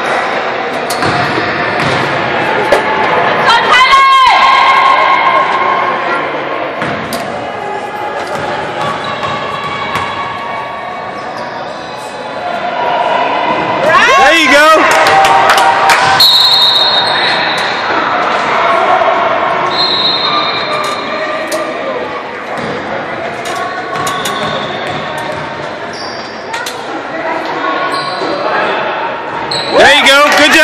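A basketball bouncing on a hardwood gym floor amid echoing crowd chatter in a large gym, with a few brief high squeaks.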